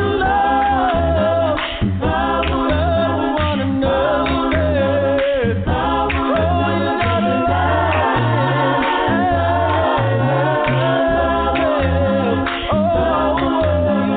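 A cappella gospel vocal group singing: a lead voice wavers over backing harmonies and a low bass voice, with no instruments.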